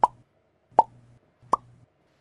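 Three short pop sound effects about three-quarters of a second apart, each a quick upward blip in pitch.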